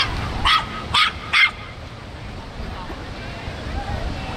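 A small dog yipping four times in quick succession, about half a second apart, in the first second and a half.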